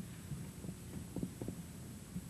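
Quiet hall room tone with a steady low hum, and a few soft low thumps of footsteps on the stage about a second in.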